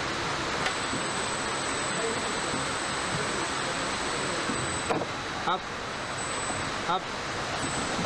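Steady hum and hiss of a car assembly hall with a thin high steady tone over it, and a man calling out "up" twice near the end.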